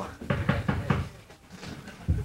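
Knocking on a door as a stage cue: several quick raps in a row in the first second, then a few fainter taps.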